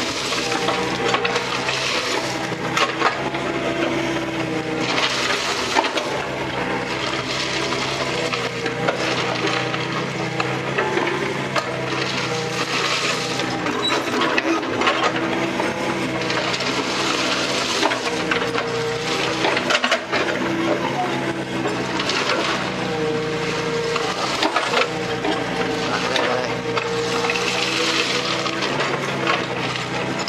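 Small excavator's diesel engine running steadily, its tone shifting with the hydraulic load. The bucket scrapes and spreads crushed stone, with gravel crunching and scattered clicks of stones.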